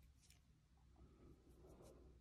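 Near silence, with faint ticks and rustling from a crochet hook working cotton yarn.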